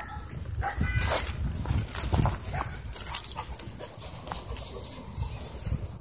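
Dogs moving about and playing on grass, with a brief dog vocalization about a second in.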